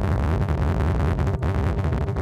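Synthesizers (a Novation Bass Station and a Deluge synth voice) playing a sequenced note pattern at over 1,000 BPM, the notes so fast they run together into a dense, rapid stutter with a strong bass line under it. The sequencer is being pushed past the tempo it can keep in sync with.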